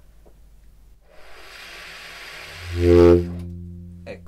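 Conn 12M baritone saxophone played in subtone, started with air alone and no tonguing. About a second in comes a breathy rush of air through the mouthpiece, out of which a low note gradually speaks as the reed begins to vibrate. The note swells to a loud peak and then fades.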